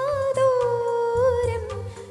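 A young woman's solo voice, amplified through a handheld microphone, sustains one long held note with slight wavering ornaments over instrumental accompaniment; the note tapers off near the end.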